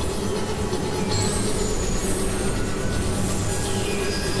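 Dense experimental noise-drone music: a thick, steady wash of noise over held low tones, with thin high sliding tones about a second and two seconds in and a falling one near the end.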